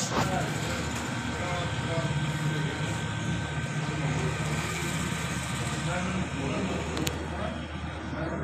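Indistinct murmur of several men's voices in a small room, with no clear words, over a steady low hum.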